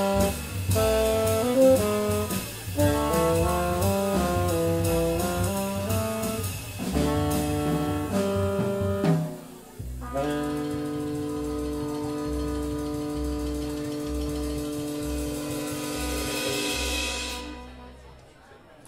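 Live jazz quartet: tenor saxophone and trumpet playing a melody over bass and drums, then closing the tune on one long held chord that swells near the end and stops.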